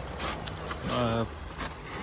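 Steady low outdoor rumble with a faint hiss, broken a little under a second in by a short hesitation sound in a man's voice.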